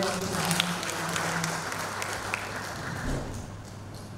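Audience applauding, fading out about three seconds in.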